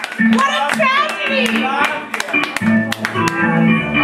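Recorded pop or rock song with vocals played over a club sound system, with sharp percussive clicks; a bass line comes in about two and a half seconds in.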